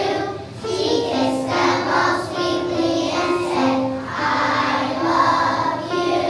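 A group of young children singing a song together, holding each note for around half a second to a second before moving to the next.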